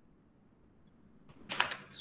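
Near silence, then from about one and a half seconds in a short run of sharp clicks and crackle coming over the online-call audio.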